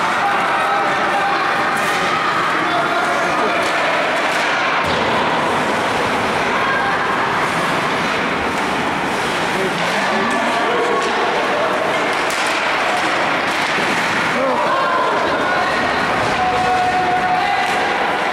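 Rinkside sound of an ice hockey game: untranscribed voices of spectators and players chattering and calling over a steady background, with scattered knocks from sticks, puck and boards.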